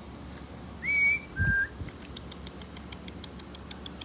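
A person whistling two short clear notes close by, the first high and the second a step lower, about a second in.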